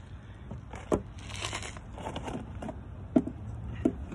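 A plastic seed-tray lid being handled and opened: sharp plastic clicks about a second in and twice near the end, with a brief crinkling of thin plastic in between.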